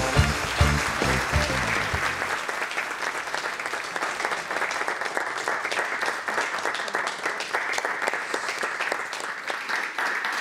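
Show theme music with a pulsing bass beat, ending about two seconds in and giving way to a studio audience applauding, a somewhat quiet applause that carries on steadily.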